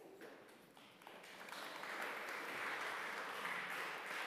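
Congregation applauding, building up about a second in and holding steady.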